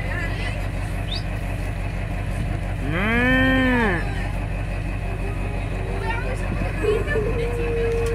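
A young calf mooing once, about three seconds in: a single drawn-out call, a little over a second long, that rises and then falls in pitch.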